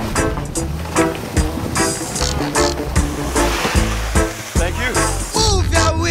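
Reggae music with a steady beat and bass line.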